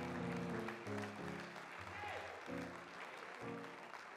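Soft held keyboard chords, changing about every half second, over a faint haze of congregation applause.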